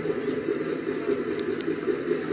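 Steady low background hum, with two faint ticks about a second and a half in.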